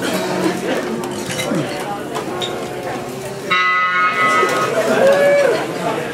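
Background chatter, then about three and a half seconds in a bell-like guitar chord rings out suddenly and fades. About a second later a guitar note bends up and back down.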